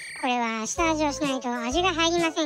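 A high-pitched narrating voice speaking in Japanese, over low background music notes, with a brief beep at the very start.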